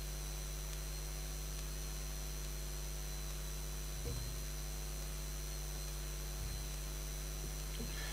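Steady electrical mains hum with a thin high whine on an open microphone feed. Two faint bumps break in, one about halfway through and one a couple of seconds later.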